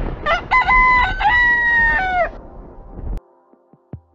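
A single drawn-out animal call over a low rumble: a few short notes, then a long held note that falls at its end, finishing a little past two seconds in. Near silence follows, with a few faint clicks.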